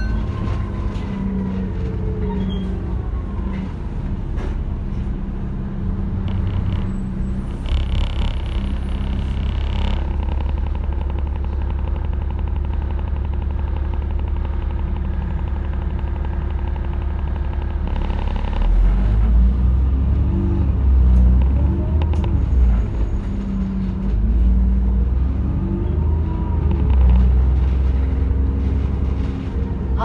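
Double-decker bus engine heard from the top deck, running with a steady low drone. In the second half its pitch rises and falls several times as it pulls away and changes gear.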